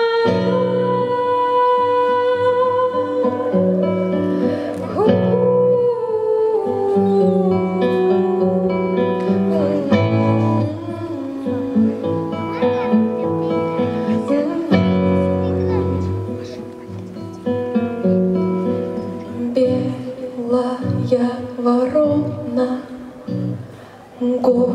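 A girl's solo voice singing a slow song through a microphone, with long held notes, over instrumental accompaniment with low sustained chords.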